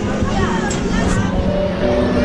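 Turning fairground carousel: a steady low rumble with a few long held tones that step in pitch, and people's voices around it.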